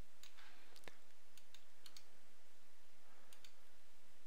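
Computer mouse button clicks: a handful of short, sharp clicks, the loudest about a second in, over a faint steady hiss.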